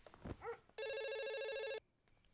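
Telephone ringing once, a single electronic ring about a second long that starts just under a second in and stops sharply. It is preceded by a couple of short yelps that sound like a dog.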